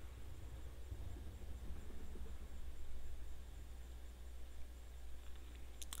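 Quiet room tone: a steady low hum under faint background noise.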